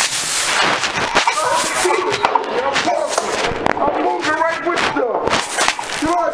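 A struggle heard through a body-worn camera's microphone: loud rubbing and knocking of clothing against the mic, with a burst of noise in the first second. A man's voice cries out several times over it, without clear words.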